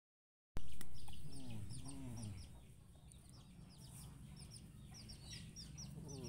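Birds chirping: short, high, falling chirps repeated several times a second, with a few lower calls in the first two seconds.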